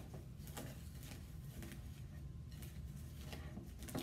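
A spoon stirring dry chow mein noodles coated in melted butterscotch and peanut butter in a mixing bowl: faint, irregular rustling and scraping over a low room hum.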